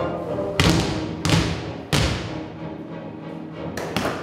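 Basketballs bouncing on a wooden floor: four heavy thuds, the first three evenly spaced about two-thirds of a second apart and the last near the end, each echoing in a large hall, over sustained background music.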